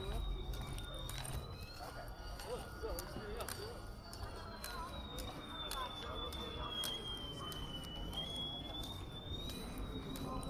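Outdoor crowd ambience: faint scattered chatter over a low rumble, with frequent small clicks. A thin high whine runs through it, drifting slowly down in pitch and back up.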